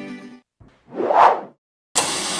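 Plucked-string music fades out, then a single whoosh sound effect swells and falls away. A sudden burst of static-like noise cuts in right at the end as the channel logo glitches onto the screen.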